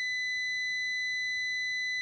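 A multimeter's continuity beeper sounds one steady, high-pitched tone. It signals full continuity across the keyboard membrane's traces while the spacebar and N key contacts are pressed together.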